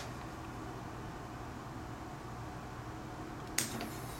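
A faint steady hum, then near the end a sudden short burst of air and clatter as a pneumatic cylinder, fired through a 3/2 air valve, drives an aluminium accordion (scissor) linkage upward.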